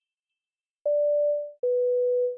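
Airliner cabin chime, a two-note 'ding-dong': a higher tone about a second in, then a lower one that rings on, signalling a cabin announcement.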